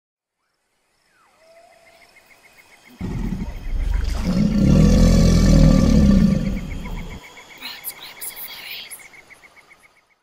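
Intro sound effect: faint outdoor nature ambience with steady rapid chirping, then a deep animal roar that starts suddenly about three seconds in, swells and fades away by about seven seconds.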